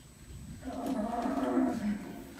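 A long, low groan from the simulated overdose patient as he comes round after a naloxone (Narcan) dose, voiced through the simulation manikin. It starts about half a second in and holds a fairly steady pitch for about a second and a half.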